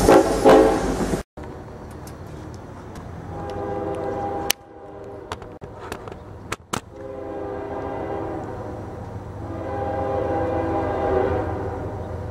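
Diesel freight locomotive air horns sounding: a loud horn blast at the start that cuts off about a second in, another from about three seconds in that stops suddenly, and a longer, quieter blast in the second half. Under it the low rumble of a passing freight train, with a few clicks in between.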